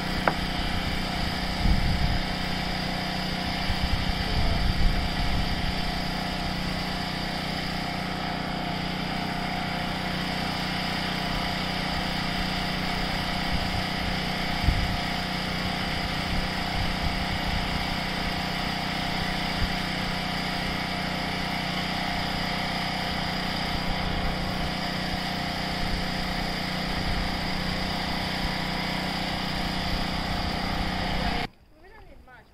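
A small engine running steadily at constant speed, with a few short knocks over it.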